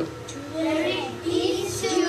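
Young children singing, starting about half a second in, with some notes held.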